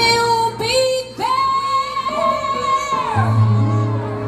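Neo-soul song: a woman sings long held notes over a bass line, and the bass comes back more strongly about three seconds in.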